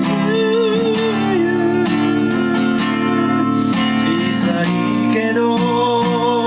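Gibson Southern Jumbo acoustic guitar strummed in steady rhythm, full ringing chords with a strong low end.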